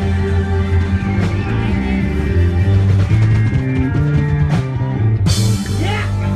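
Live band music played loud through a concert PA and picked up on a phone, with a bass line moving every half second or so. Near the end a sudden bright burst of noise cuts across it.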